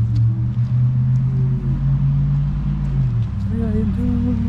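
People's voices inside a car. A low voice holds a long hummed note that steps up in pitch halfway and breaks off near the end, over the car's low rumble.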